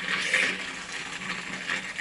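Liquid being poured into a glass jar for an iced coffee: a steady rushing, splashing pour.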